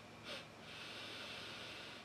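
A man breathing in through his nose, sniffing a glass of beer for its aroma. There is a short sniff about a third of a second in, then a longer, faint, steady breath.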